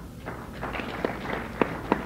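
Lecture-hall audience stirring between remarks: a soft, low rustle and murmur that rises slightly, with a few sharp knocks or claps scattered through it, about four in the second half.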